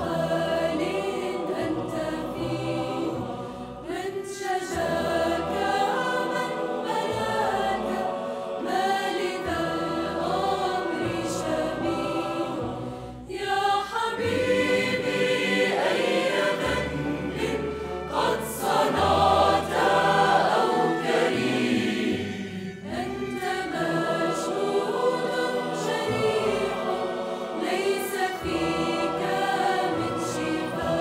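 Mixed choir of women and men singing with a small orchestra of strings and woodwinds, with a short pause between phrases about thirteen seconds in.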